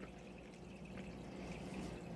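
Faint room tone: a low steady hum under soft background hiss, with no distinct event.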